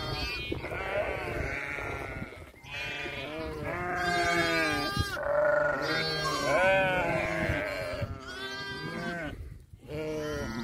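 A flock of Harri sheep, ewes and young lambs, bleating continuously with many overlapping calls. The bleating is loudest in the middle, with short lulls about two and a half seconds in and just before the end.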